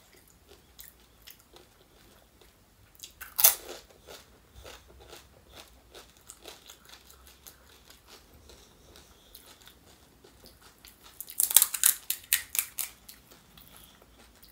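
Close-up eating of panipuri: one loud crisp crunch of the hollow puri shell a few seconds in, then quieter wet chewing with small crackles. A dense run of sharp, crisp crackles comes a couple of seconds before the end.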